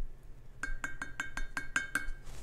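Wooden spoon clinking against a glass mason jar of water: about eight quick, evenly spaced clinks in the second half, roughly six a second, each with a short glassy ring.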